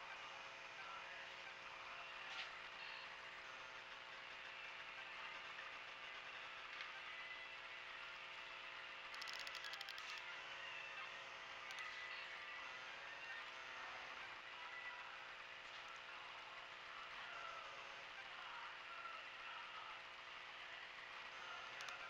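Faint steady mechanical hum with hiss, and a brief rattle about nine seconds in.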